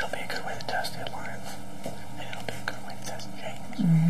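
A man whispering, with a short voiced word just before the end.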